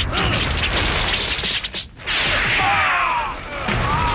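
Dubbed fight-scene sound effects: a dense, loud blast of crashes, whacks and whooshes, a short break just before two seconds in, then a second blast with wavering gliding tones over it as figures are thrown down in dust.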